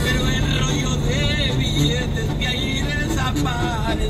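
Steady low drone of a semi truck's engine and road noise heard from inside the cab at highway speed, with a song playing over it in wavering melodic lines.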